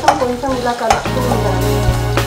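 Sliced onions sizzling in hot oil in a kadai, stirred and scraped with a metal perforated spoon, being fried until brown. Background music comes in about halfway.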